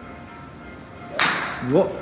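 A TaylorMade SIM2 Max 3-wood strikes a golf ball about a second in: one sharp, loud impact with a short ringing tail. The golfer judges it a topped shot. A brief rising vocal sound follows just after.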